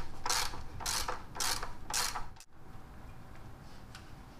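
Ratchet wrench with a 24 mm socket clicking in short, even strokes about half a second apart, four times, as it loosens a fitting on the engine's valve cover, then stopping about two and a half seconds in.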